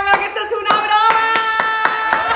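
Several irregular hand claps with laughter. From under a second in, a woman holds one long, steady, high-pitched yell.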